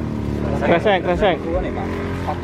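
Men's voices talking over the steady drone of an engine running.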